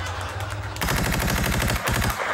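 A rapid burst of automatic gunfire, many shots a second for about a second, starting a little under a second in.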